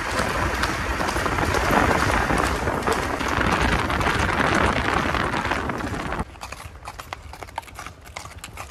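Horse hoofbeats on a paved road, fast and loud, as a horse is ridden at speed. About six seconds in they drop suddenly to quieter, sparser clops of horses walking.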